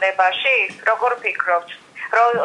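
Only speech: a man talking, with a brief pause near the end.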